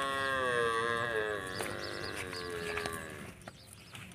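A goat's long, drawn-out bleat: one sustained call that wavers a little in pitch and dies away a little past three seconds in.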